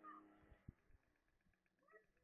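Near silence, with a faint short animal call right at the start, two soft thumps just after half a second in, and more faint calls near the end.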